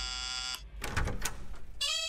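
Electric doorbell buzzing while its wall switch is pressed: one steady, many-toned note that cuts off about half a second in.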